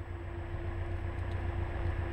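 Cessna 172's piston engine idling, heard inside the cabin as a steady low pulsing that grows slightly louder, while the aircraft waits for its pre-takeoff run-up check. A steady hum runs alongside.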